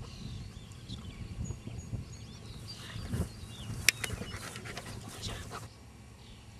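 German Shepherd dog panting after running the agility course, with wind rumbling on the microphone. A single sharp click about four seconds in.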